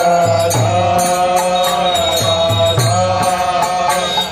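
Devotional mantra chanting (kirtan): a sung melody with long held notes over a steady percussive beat of about three strikes a second and a repeating low bass note.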